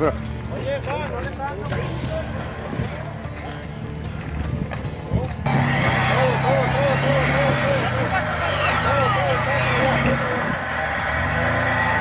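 Lifted Jeep Wrangler's engine running at low revs as it crawls over boulders, with voices and laughter over it. About halfway through the sound changes abruptly to a louder, steadier engine tone.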